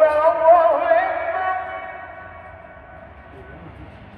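Islamic call to prayer (ezan) sung by a male muezzin and carried across the city: one long, wavering, melismatic phrase that fades away about two seconds in, leaving a pause before the next phrase.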